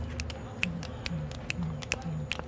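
Finger snaps about twice a second, with a Victoria crowned pigeon answering from about half a second in with short, deep booming coos in the same rhythm, a call the guide describes as a greeting.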